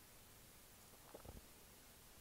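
Near silence: faint steady room hiss, with one brief, faint low sound a little past a second in.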